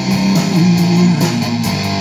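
Rock band playing live, with electric guitar, bass guitar and drums going on between sung lines.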